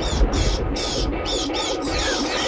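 Bats screeching as a flock flies past: a rapid run of short, high, falling squeaks, about four a second. Under it, the low rumble of a thunderclap fades in the first half-second.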